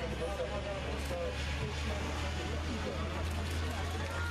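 A heavy lorry driving past, a steady low rumble throughout, with voices calling and talking over it.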